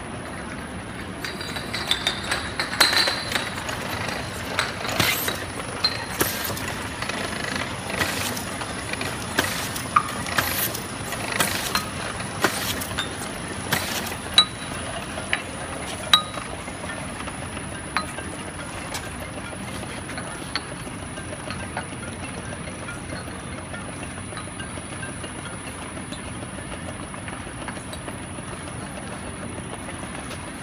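Automatic round-bottle double-side labeling machine running steadily with a thin high whine, while frosted glass bottles clink and knock against each other and the conveyor many times in the first half, the clinks thinning out later.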